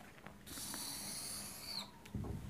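Whiteboard marker writing on a whiteboard: a faint, high scratchy hiss lasting a little over a second, ending in a short squeak.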